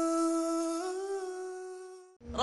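A single long hummed vocal note, held on one pitch, that steps up slightly under a second in and then fades out near the end.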